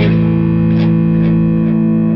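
Stoner doom metal: a distorted electric guitar chord held and ringing out through effects, with a few light strikes about half a second apart in the second half.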